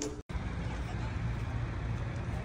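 Steady outdoor background noise with a low rumble, after a brief gap in the sound near the start.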